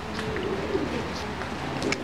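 American Show Racer pigeons cooing, a faint low coo drifting down in pitch in the first second.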